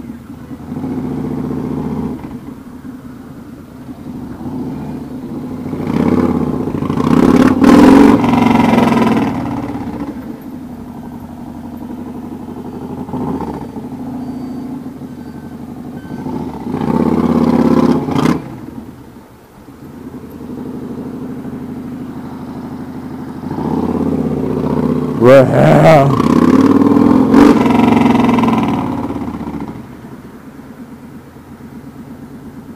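Yamaha Raider S cruiser's big air-cooled V-twin running under way, swelling louder three times as it accelerates and easing off between.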